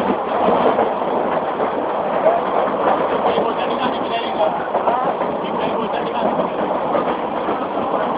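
Steady running noise of a moving passenger train heard from inside a crowded carriage by the open door, with the chatter of several passengers' voices over it.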